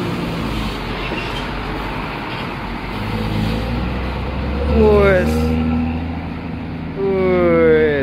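Large bus diesel engine running as the coach moves past close by, its low hum building and strongest about midway. A man calls out twice over it, each call falling in pitch, the second held longer near the end.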